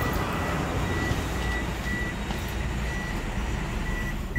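A car's warning chime beeping steadily at a high pitch, about two short beeps a second, over a low steady rumble and hiss.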